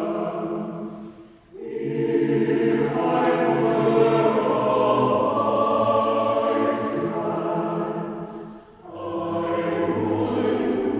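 Mixed choir singing sustained chords in a slow sacred piece, pausing briefly between phrases about one and a half seconds in and again near the end.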